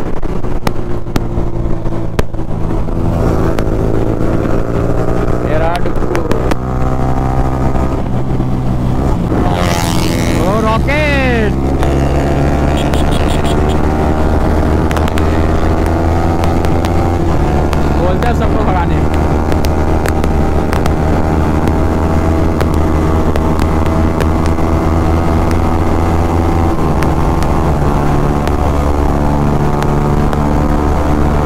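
Sport motorcycle engine running at road speed, heard from the rider's seat with wind rushing over the microphone. Its note shifts a few times as the throttle or gear changes, and about ten seconds in a pitch sweeps sharply downward.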